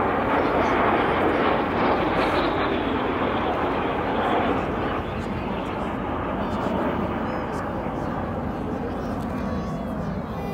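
Engine noise of a four-aircraft formation flying past overhead: a steady rushing sound that is loudest over the first few seconds and fades from about halfway as the formation draws away.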